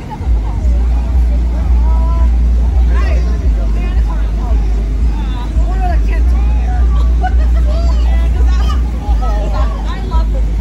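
Several young children's voices and squeals from inside an inflatable bounce house, over a heavy, steady low rumble that is the loudest sound.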